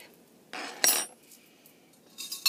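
Crochet hooks clattering against one another in a jar as a hand rummages among them: a short rattle about half a second in, with one sharp clink just under a second in.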